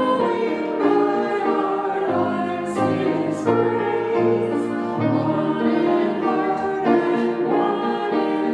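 Voices singing a slow hymn together, in long held notes that change about once a second.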